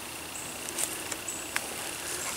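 Steady faint hiss of outdoor background noise picked up by a camera microphone, with a couple of light clicks.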